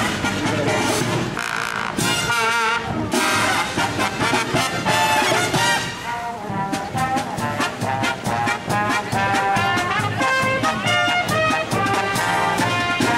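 Marching brass band of trumpets, trombones, sousaphones and bass drum playing a patriotic medley. The music eases briefly about six seconds in, then goes on with short, rhythmic notes.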